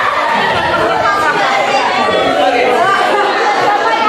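Speech only: excited talking into a microphone, with other voices chattering around it in a large room.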